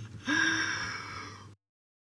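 A man's breathy laughing gasp, starting sharply about a quarter second in and trailing off. It cuts off abruptly about a second and a half in.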